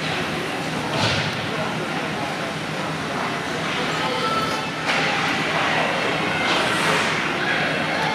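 Ice hockey play in an indoor rink: a steady arena hum with skates scraping the ice in a few short swells and occasional stick and puck thuds, under faint spectator chatter.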